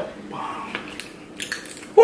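Eating noises from a seafood boil: a few light clicks and cracks of crab shell and utensils, with a soft brief murmur about half a second in.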